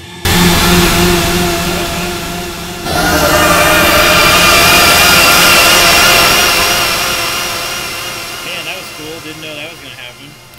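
Electric guitar played through a Max/MSP effects chain of distortion, modulation and shimmer: a heavily processed, fuzzed-out sustained chord that swells brighter about three seconds in and then slowly fades.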